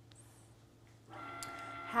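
Near silence, then about a second in a Cricut Maker's motors start up with a steady whine as the machine begins a scoring and cutting job on cardstock.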